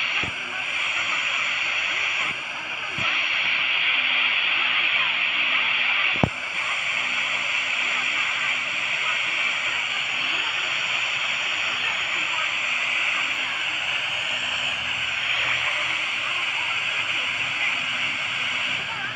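FM radio static from a Tecsun PL-310ET portable receiver tuned to 91.5 MHz: a steady hiss with a weak broadcast voice buried under it, the sign of a distant station received only by tropospheric ducting. A sharp click about six seconds in.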